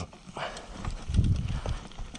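Downhill mountain bike rattling over a rocky trail: tyres knocking on stones and the bike clattering in irregular knocks, with heavier low thumps about a second in.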